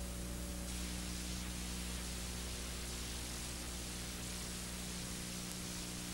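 Steady hiss with a low electrical hum and no speech: background noise of the broadcast audio feed.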